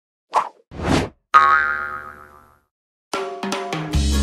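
Logo sound effects: two quick whooshes, then a bright struck chime that rings out for about a second. About three seconds in, music with a steady tapping beat starts.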